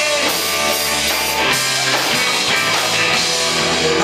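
Live rock band playing loud: electric guitars over a drum kit.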